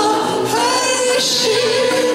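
A woman singing a Turkish song live, accompanied by clarinet, violin and kanun in a small traditional ensemble.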